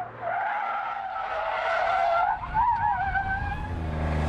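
Smart Roadster's tyres squealing under hard cornering. It is a steady squeal that drops out briefly just after the start, then returns and wavers in pitch near the end.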